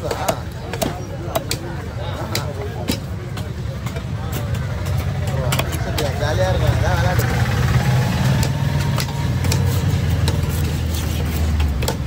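Heavy fish-cutting knife chopping through fish on a wooden block, repeated sharp knocks at irregular intervals, over a steady low engine rumble and background voices.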